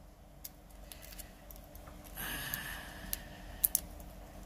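Fingernails picking at and peeling the release-paper backings off adhesive 3D foam pads stuck to a cardstock panel: faint scratchy rustling of paper from about two seconds in, with a few sharp little clicks near the end.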